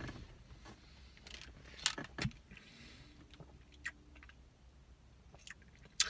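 Quiet mouth sounds of someone tasting a mouthful of protein shake: scattered small lip smacks and tongue clicks, a couple of them louder about two seconds in.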